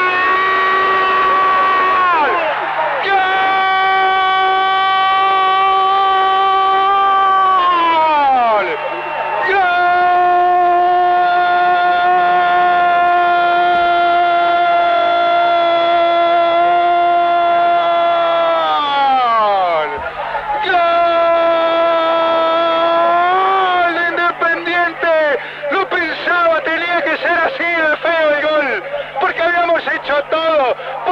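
Football commentator's drawn-out goal call: one man shouting "gol" with the vowel held in long breaths of several seconds each, the pitch sliding down as each breath runs out. In the last few seconds the call breaks into shorter shouts.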